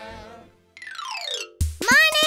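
A children's song fades out, then an electronic tone sweeps downward in pitch for under a second as a transition sound effect. Near the end, new music with a strong bass beat and a voice starts.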